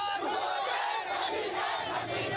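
Crowd of protesters shouting slogans, many voices overlapping at once.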